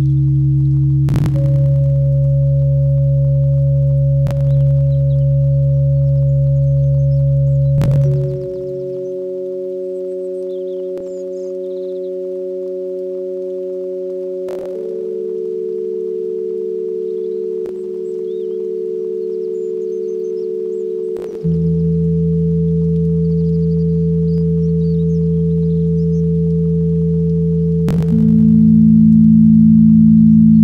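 Ambient music of slow, sustained pure-tone chords, changing about every six or seven seconds with a soft click at each change. A deep bass drone drops out near the first third and comes back about two-thirds of the way in.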